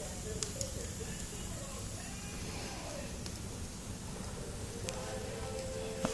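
Wood fire burning in a fireplace, with a few sharp crackles and pops over a steady low hiss.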